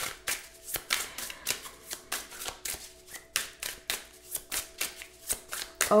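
A tarot deck being shuffled by hand: a run of quick, irregular card slaps and riffles, several a second.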